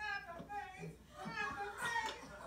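Children's voices talking and chattering, high-pitched and in quick bursts.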